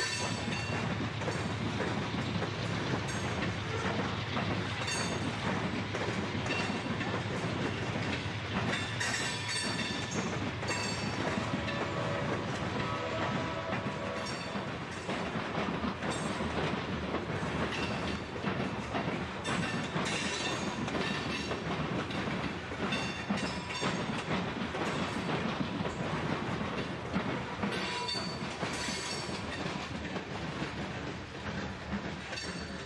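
Freight cars of a unit coal train rolling past at speed, a steady rumble with irregular clicks and clacks of the wheels over the rail joints.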